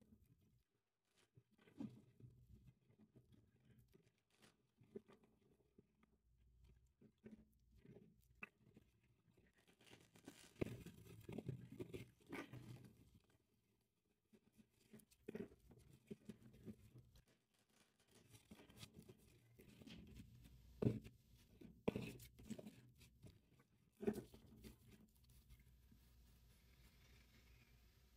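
Very faint hand-shuffling of a tarot deck: soft rustles and light taps of cards, sparse at first and coming in short bursts through the second half.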